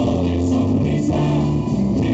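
A live band playing a song through the PA, with acoustic and electric guitars over a steady bass line.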